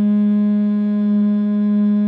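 A woman humming a steady note in perfect unison with a plain reference tone, so the two blend into what sounds like one single note. This is what singing in tune sounds like against the reference pitch.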